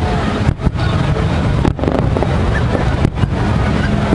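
Wind rumbling on the microphone, a loud steady noise with a few brief dropouts. No distinct firework bangs stand out.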